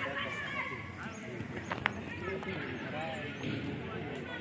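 Several voices talking and calling out over one another, with one sharp click a little before halfway.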